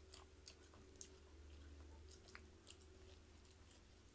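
Faint chewing: soft, irregular mouth clicks of a person eating, over a low steady hum.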